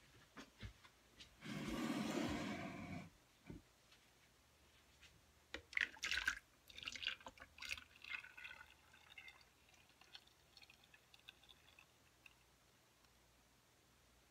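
Raw cold-process soap batter being poured from one container into another as the batch is divided, with a noisy pour about two seconds in, then a run of light knocks and scrapes of a utensil against the container.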